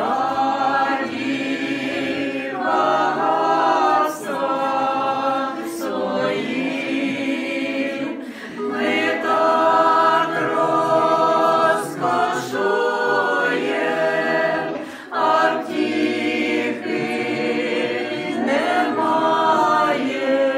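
Unaccompanied group of mostly women's voices singing an Orthodox church hymn together, in phrases a few seconds long with short breaks for breath between them.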